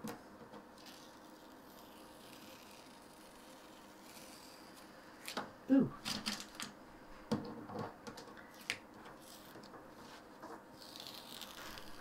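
Masking tape being peeled slowly off paper on a tabletop: a faint hiss near the end, with a few light taps and clicks of handling before it.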